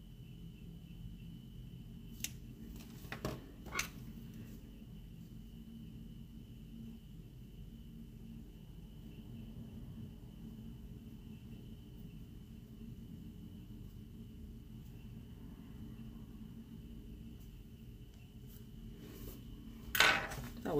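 Quiet room tone: a steady low hum under a faint thin high whine, with three brief clicks of small desk items being handled between about two and four seconds in.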